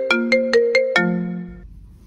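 Mobile phone ringtone: a short melody of quick notes that stops about a second and a half in and fades away.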